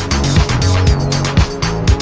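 Background music with a steady drum beat and a moving bass line.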